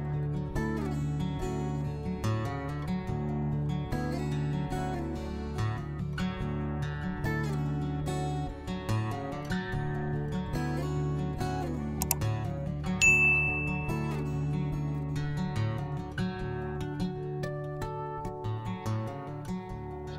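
Background music with plucked, guitar-like notes. About 12 s in, a subscribe-button animation adds a click and, a second later, a short high bell-like ding.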